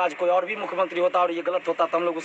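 Only speech: a man talking steadily to a group.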